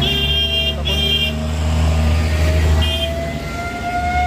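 Road traffic with a vehicle engine running low and close, and a car horn tooting three short high-pitched blasts: twice in the first second and once about three seconds in.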